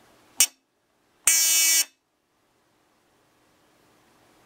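Piezo buzzer of a 555-timer shadow detector sounding: a very short blip, then a steady, evenly pitched buzz lasting about half a second.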